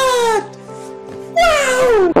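Background music with steady held tones, overlaid by two loud, high, meow-like cries that slide down in pitch, one at the start and one near the end: an edited-in meme sound clip.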